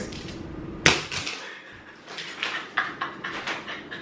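A sharp click about a second in, then a string of light clicks and rustles from scissors and a throw pillow being handled.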